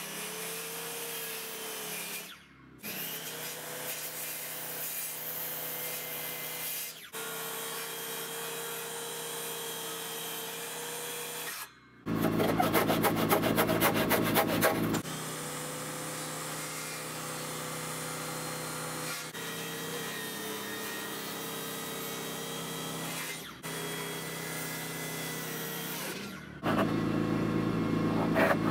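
Power saws cutting a two-by-six rafter board: a steady motor run broken by short pauses. Two louder stretches of rough, rapid cutting come about twelve seconds in and again near the end.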